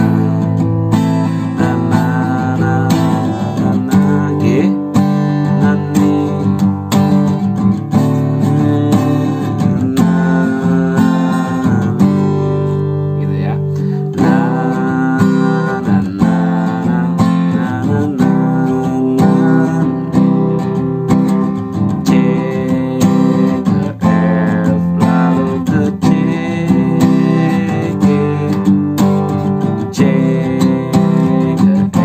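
Acoustic guitar strummed steadily through a progression of basic open chords, the chords changing every second or two.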